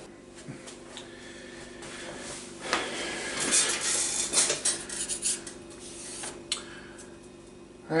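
Cords and tools being handled on a wooden workbench: irregular rustling and light clattering in the middle few seconds, over a faint steady hum.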